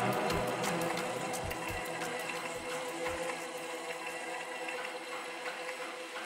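Electronic music playing from a DJ mix in a quiet breakdown: steady hi-hat ticks over sustained synth chords. A few kick-drum thumps sound in the first three seconds, then the kick drops out and the bass is gone.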